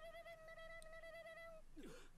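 Faint, steady held tone with overtones, wavering slightly, from the anime's soundtrack. It stops about one and a half seconds in, followed by a brief falling sound near the end.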